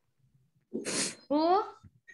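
A person's voice: a short breathy burst about three-quarters of a second in, then a brief voiced sound rising in pitch.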